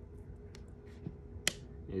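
A single sharp click about one and a half seconds in, after two fainter ticks, over a faint steady hum.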